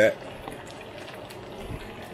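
Chicken wings deep-frying in a cast iron pot of piping-hot oil: the oil bubbles in a steady, even hiss around the pieces.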